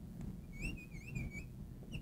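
Marker squeaking on a lightboard's glass as a wavy line is drawn: a faint, thin squeak lasting about a second whose pitch wobbles up and down with the strokes.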